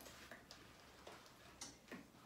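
Near silence with a few faint light clicks and taps, small objects being handled while rummaging for something.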